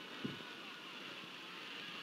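Faint, steady background hiss with no clear event, with one small blip about a quarter second in.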